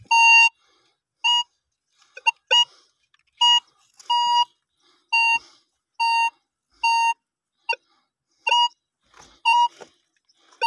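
Metal detector beeping as its coil is swept over a target. About a dozen beeps come at uneven intervals, all at one mid pitch, some short and some held longer, with a few brief lower-pitched chirps among them.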